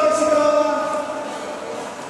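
A ring announcer's voice drawing out one long call on a steady pitch, fading out about a second and a half in, as the decision of the bout is announced.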